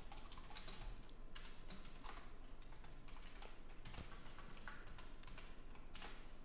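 Faint, irregular clicking of a computer keyboard as code is typed.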